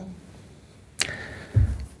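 A man's sharp intake of breath close to the microphone about a second in, followed half a second later by a short, low puff of air against the mic.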